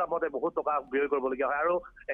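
Speech only: a man talking over a telephone line, the voice narrow and thin with the highs cut off.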